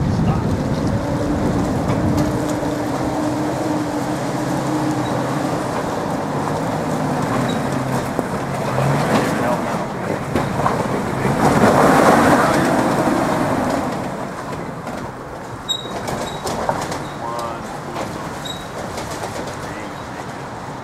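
Nissan Xterra's engine working as the SUV crawls over a stumpy off-road trail, swelling to a louder surge about twelve seconds in as it powers up the obstacle. Short, repeated squeaks from the truck follow near the end.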